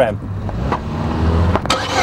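A car engine running steadily with a low hum, with a short click about midway and a rush of hissing noise building near the end.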